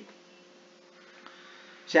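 Faint steady electrical hum with two level tones over low hiss, in a pause in speech; a man's voice starts again at the very end.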